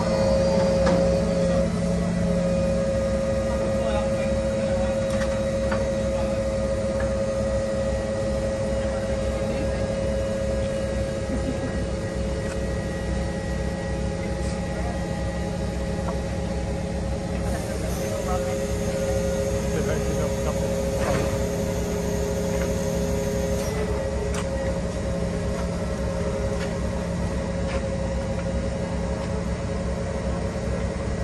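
Large mobile crane's diesel engine running steadily, a low drone with a constant hum, as it lifts a counterweight slab. A faint high whine joins for about six seconds midway.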